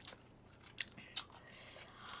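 Faint eating sounds: someone chewing food, with two short clicks a little under a second in and again just past a second, from metal chopsticks.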